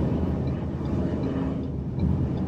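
Steady low rumble of road and tyre noise heard inside a car cruising on a multi-lane freeway.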